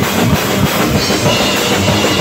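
Live rock band playing loudly: drum kit with cymbals, electric guitar and bass guitar, heard close to the drums.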